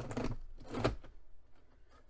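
We R Memory Keepers Cinch book-binding machine punching a stack of two paper pages and an acetate sheet: the handle is pressed down and let back up, two short mechanical strokes in the first second.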